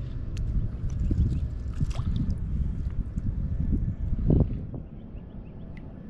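Wind rumbling on the microphone and shallow water sloshing around a wading angler, with a louder splash a little after four seconds in as a small fish is let go into the water. The rumble then drops to a quieter steady hiss.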